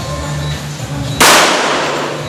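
A single pistol shot about a second in, sharp and loud, trailing off over about half a second.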